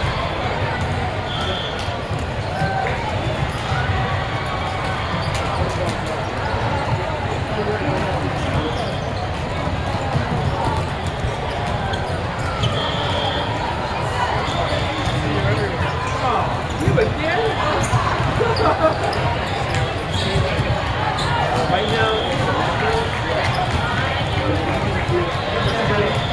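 Busy indoor volleyball tournament ambience in a large hall: many voices in the background, volleyballs being struck and bouncing on the courts, and several short, high, steady whistle blasts.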